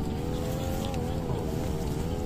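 A motor engine running steadily, a low rumble under an even, slightly wavering hum.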